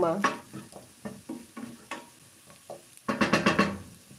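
Wooden spatula stirring and scraping diced potatoes frying in a nonstick pan, a string of separate short knocks against the pan, with a louder burst of quick repeated strokes about three seconds in.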